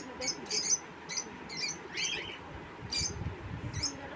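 Small cage birds in an aviary chirping: a steady stream of short high-pitched chirps, several a second, from more than one bird.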